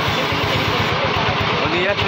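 Motor van's engine idling with a rapid, even beat, with men's voices talking over it.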